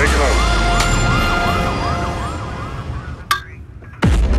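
Police car siren in a fast rising-and-falling yelp, about three cycles a second, over a low rumble, fading away over the first three seconds. A short sharp click follows near the end.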